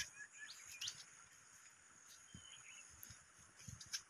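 Faint outdoor ambience, close to silence, with a few soft bird chirps over a steady faint high-pitched drone.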